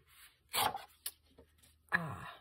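A sheet of paper rustling as it is handled and laid flat on a tabletop, with a short rub about half a second in and a light tick near one second.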